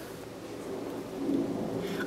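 Quiet room noise: a faint hiss and low rumble with a weak low hum in the second half, and no distinct sound event.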